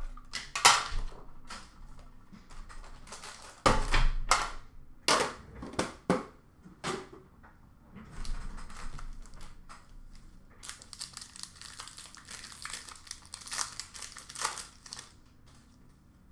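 Hockey card packs being handled and torn open: a few sharp knocks and rustles in the first seven seconds, then a long run of crinkling wrapper from about ten seconds in.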